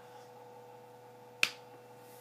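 A single sharp click about one and a half seconds in, over a faint steady hum.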